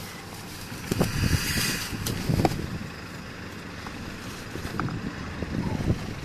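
Wind on the microphone, with a few rustles and knocks from a plastic bag and wrapped packages being handled, loudest about one to two and a half seconds in.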